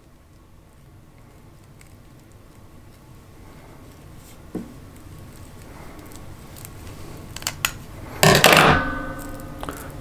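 Scissors cutting around the insulation of a battery cable: faint scraping with a few small clicks of the blades, then near the end a louder clatter and a brief metallic ring as the steel scissors are put down on a wooden table.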